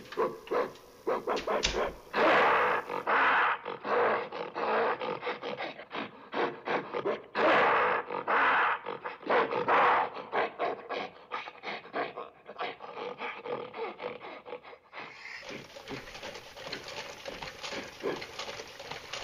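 Animal-like growling and roaring in a rapid string of loud, rough bursts, from about two seconds in until about fifteen seconds, then trailing off into softer growls.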